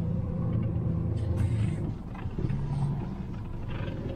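Car engine running with a steady low hum, heard from inside the cabin as the car is slowly reversed into a parking space; the hum eases a little about two seconds in.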